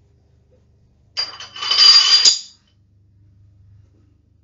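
A metallic jingling clatter, starting sharply about a second in and lasting about a second and a half, ending with a click.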